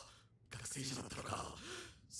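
A man speaking in dialogue from the anime episode, heard at low volume, starting about half a second in.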